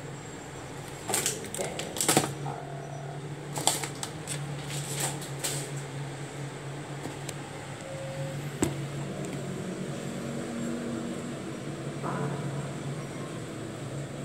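Clicks and knocks of kitchen things being handled on a counter, in a few quick clusters, over a steady low appliance hum that starts about two seconds in.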